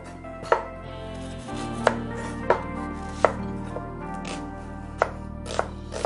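Kitchen knife chopping an onion on a wooden chopping board: about seven sharp knocks of the blade meeting the board, unevenly spaced.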